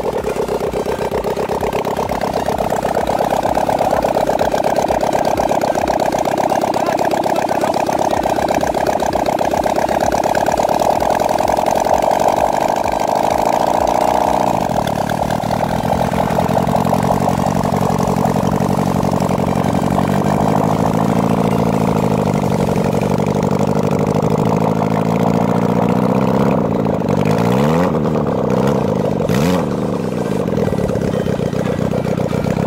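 A 600 cc Suzuki motorcycle engine in a go-kart runs at a steady high pitch for about fifteen seconds, then drops to a lower, lower-revving note. Near the end there are a few quick revs that sweep up and back down.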